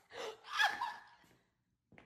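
A person gasping: two quick breathy gasps, the second louder with a wavering pitch, then quiet.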